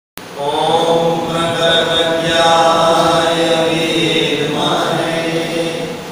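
A voice chanting a devotional mantra in long, held notes.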